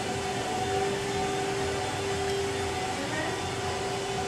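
Steady store ambience: a constant rumbling noise with a faint held tone running through it.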